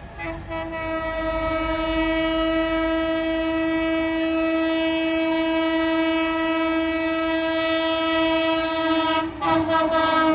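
WAP7 electric locomotive's air horn blowing one long, steady blast as the train approaches at high speed. Near the end the blast stutters with a few short breaks as the locomotive reaches the camera.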